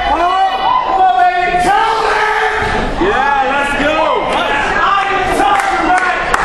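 Audience cheering and shouting, many voices whooping and calling out at once.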